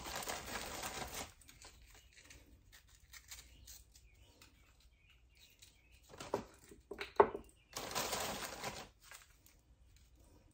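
The plastic sleeve of vanilla wafers crinkling as cookies are pulled from it, in two bursts: at the start and again about eight seconds in. Between them come a few sharp clicks and taps as the wafers are handled and laid in the glass dish.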